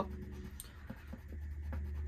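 Yellow coloured pencil scratching faintly on paper as small printed shapes are coloured in, over a low steady hum.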